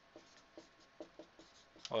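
Marker writing on a whiteboard: a series of short, faint strokes as the pen moves across the board.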